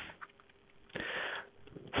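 A person drawing a short breath in, a soft hiss lasting about half a second, about a second in.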